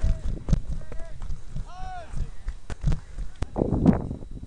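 Players' voices calling out across a baseball field in drawn-out shouts, with scattered sharp knocks and a louder burst of noise near the end.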